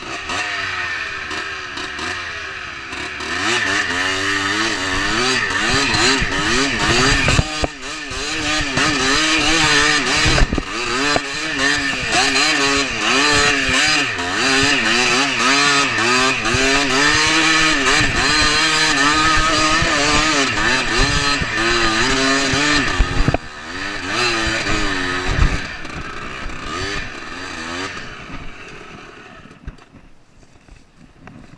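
Enduro dirt bike engine revving up and down again and again under changing throttle, with a few sharp knocks from the bike jolting over rough ground. The engine sound falls away over the last couple of seconds.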